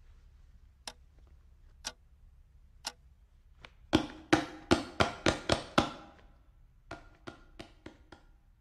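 A series of sharp knocks. First come three single ticks about a second apart. Then, about four seconds in, a quick run of about seven loud knocks follows, and near the end four softer ones.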